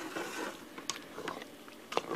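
A utensil stirring chunky cooked chicken and beans in a pressure cooker's inner pot: soft wet stirring with a few light clicks of the utensil against the pot, the sharpest just before the end.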